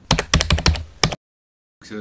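Burst of computer-keyboard typing, about ten quick keystrokes in a second, then a sudden cut to dead silence.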